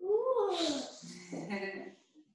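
A woman's high, strained vocal 'ooh', rising then falling in pitch, turning breathy and then dropping to lower voicing: an effort sound during a hard one-legged balancing exercise.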